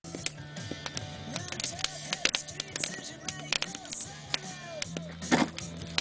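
Wood fire crackling in a steel fire ring, with frequent sharp pops over a steady low hum.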